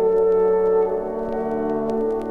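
Orchestral Christmas music playing slow, sustained chords that change about a second in, with faint clicks from the vinyl record's surface.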